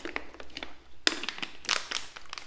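Thin plastic water bottle crinkling and crackling as someone drinks from it, a run of irregular crackles with the sharpest about a second in.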